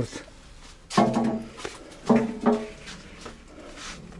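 A dog barking three times, the last two close together: the dog is nervous because birds are taking its food.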